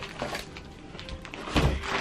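Faint background music, then a single thump about one and a half seconds in as a large gift-wrapped soft package is handled.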